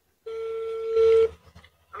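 Telephone ringback tone from a mobile phone's speaker: one steady, single-pitched ring about a second long, getting louder near its end, as an outgoing call rings through to the other party.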